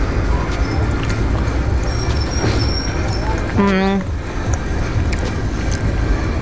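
Background music playing, with a short held hum about three and a half seconds in.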